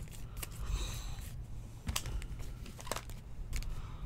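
Trading cards and a foil card pack being handled: a few short clicks and taps with faint wrapper crinkle, over a steady low hum.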